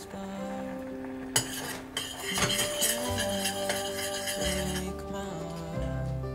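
Metal spoon clinking against a stainless steel saucepan of thick sauce, with a sharp tap about a second and a half in and a few more clinks a little later, over background music.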